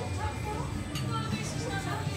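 Conversation of people seated at restaurant tables, several voices mixed together, with music playing in the background.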